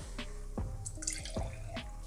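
A creamy cocktail poured from a metal shaker tin into a wine glass: quiet liquid running and dripping, with a few light clicks.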